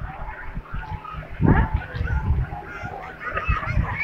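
Busy beach ambience: irregular gusts of wind rumbling on the phone's microphone, with scattered short calls and shouts from the crowd.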